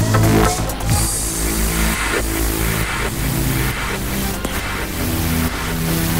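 Techno from a live DJ set over a club sound system, with a steady bass line. A rising synth tone ends just after the start, and a wash of hiss enters about a second in and fades.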